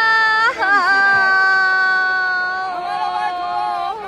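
A woman's long drawn-out whining wail in two held notes, the second a little lower after a brief wobble about half a second in, as in playful mock crying.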